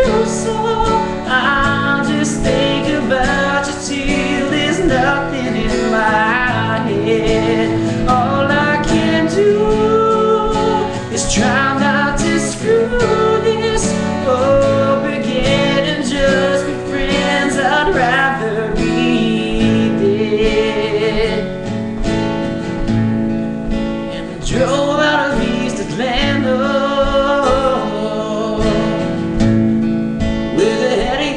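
A man singing along with a strummed acoustic guitar played with a capo.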